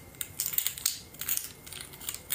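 Irregular rustling and small clicks close to the microphone: handling noise, in short scattered bursts.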